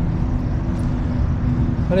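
A steady low rumble with a constant low hum running under it, and no distinct events.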